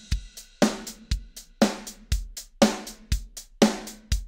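MT-PowerDrumKit sampled drum kit playing a programmed MIDI rock beat. A kick falls about once a second, a snare lands halfway between each kick, and steady hi-hats run throughout. The MIDI velocity and timing are being humanized so the hits sound less robotic.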